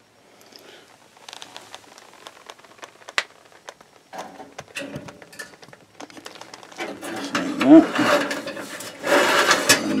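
Wire-mesh basket rattling and scraping on the metal rack of a toaster oven as it is slid in: a string of light metallic clicks and scrapes that grows busier and louder in the last few seconds, with a brief squeak of wire on metal.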